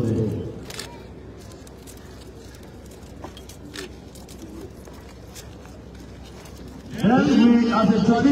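A man's voice trails off just after the start, then a low, even outdoor background with a few sharp clicks, until the voice resumes about seven seconds in.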